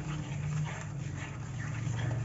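Plastic masher stirring and scraping a thick mixture of milk and milk powder in a metal pan: irregular squelching and scraping strokes over a steady low hum.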